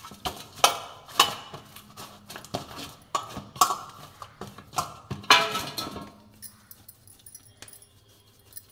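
Dough being kneaded by hand in a stainless steel bowl: rhythmic knocks and scrapes of the bowl with the clink of bangles on each push, about two strokes a second, dying away about six seconds in.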